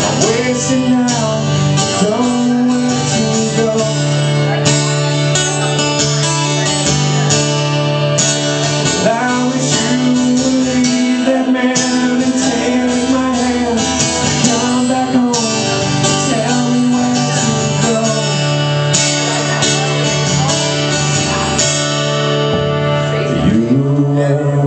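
Live acoustic song: a man singing over a strummed acoustic guitar, with a fiddle playing along.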